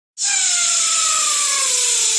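A cappella vocal effect: a steady hiss with a voice gliding slowly downward in pitch beneath it, starting abruptly a moment in.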